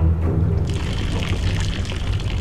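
Champagne poured out of a glass in a thin stream, starting under a second in, over a low, sustained music score.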